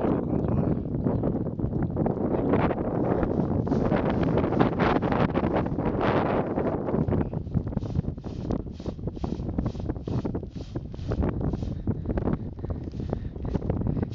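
Wind buffeting the microphone, with a twig broom beating out burning dry grass: a run of quick, even swishing strokes, about three a second, through the middle stretch.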